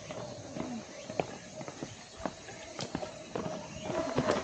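Footsteps on a hard trail surface, sharp irregular steps about every half second.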